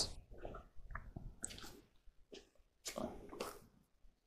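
Faint, scattered light knocks and scrapes of square plastic plant pots being set down into a plastic tray of shallow water.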